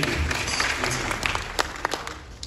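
Audience applauding, the clapping thinning out and growing quieter near the end.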